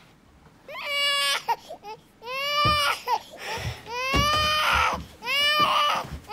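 Four long, high-pitched crying wails like a baby's cry, each rising and then falling in pitch, after a brief quiet start.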